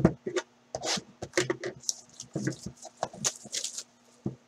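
A cardboard trading-card hobby box being unwrapped and opened by hand: a run of quick, irregular crinkling rustles and cardboard rubbing as the packaging is pulled and the lid flipped open.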